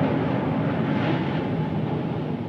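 Fusion jazz-rock band music with a dense, noisy guitar-led sound near the end of a track.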